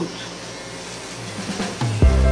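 An electric nail drill running quietly with its bit sanding old acrigel off a fingernail, a steady even sound.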